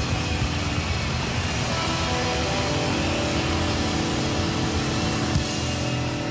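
Live rock band's distorted electric guitars holding a sustained, droning chord, with no singing.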